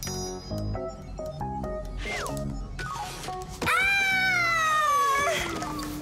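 Cartoon background music of short, stepping notes. A little over three and a half seconds in, a louder drawn-out sound effect takes over: it jumps up sharply in pitch, then slides slowly down for about two seconds.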